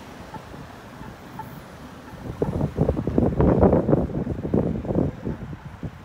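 Street traffic: a vehicle passing close by swells loudly for about three seconds from a couple of seconds in, mixed with wind rumbling on the microphone.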